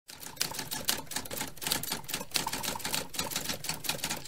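Typewriter key-clatter sound effect: a fast, irregular run of key clicks.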